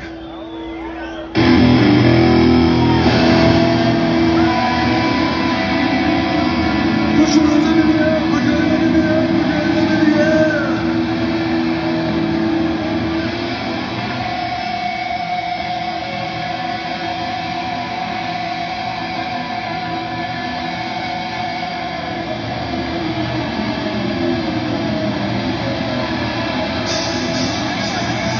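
Rock band playing live at full volume, with distorted electric guitars and drums. It starts suddenly about a second in, with long sustained guitar notes, heard from among the audience.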